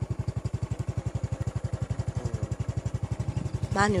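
A small engine idling nearby, an even, rapid throb of about a dozen pulses a second. A man's voice comes in near the end.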